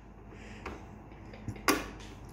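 Plastic hand crank of a Pie Face game being turned, giving a few short sharp clicks, the loudest near the end.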